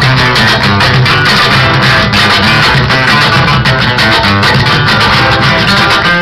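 Live Afro-Peruvian dance music: a plucked guitar over a steady, driving rhythm of cajón (wooden box drum) strokes, played loud through the sound system.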